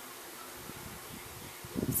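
Steady background hiss of room noise with faint soft rustles; a voice starts just before the end.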